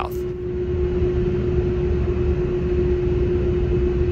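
Metra Electric bi-level electric double-decker train running along the track, heard from on board: a steady low rumble with a constant hum over it.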